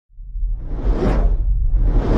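Cinematic whoosh sound effect over a deep rumble, fading in from silence, with one swell peaking about a second in and another starting near the end.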